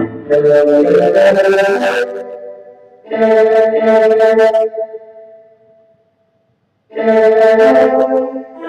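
Korg M1 software synthesizer playing its 'FilmScore' combination patch in full chords. One chord sounds at the start, another is struck about three seconds in and fades away, and after a short silence a third chord comes in near the end.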